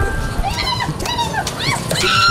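Street background noise with a quick string of short, high, rising-and-falling animal cries about half a second in.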